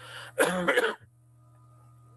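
A man clearing his throat: one rough, voiced rasp about half a second long, led in by a short breathy rush.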